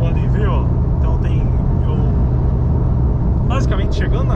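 Steady low drone of a Porsche 911 Turbo S's twin-turbo flat-six with road noise, heard inside the cabin while cruising at highway speed.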